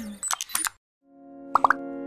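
Station logo ident sound design: plucked notes die away, then a few small clicks and a short gap. A held tone swells in, with three quick plops that rise in pitch.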